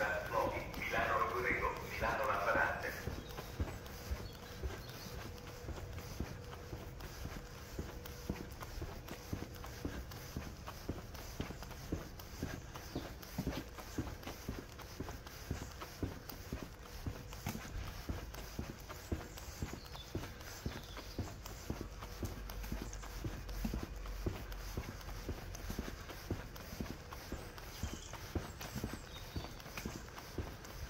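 Footsteps walking steadily on a paved station platform. Indistinct voices are heard for the first two or three seconds, and a faint steady hum runs underneath.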